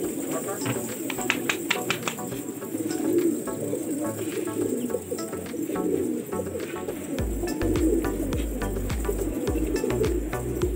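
A flock of domestic gola pigeons cooing together, with a run of sharp clicks in the first couple of seconds. Background music with a low bass line comes in about seven seconds in.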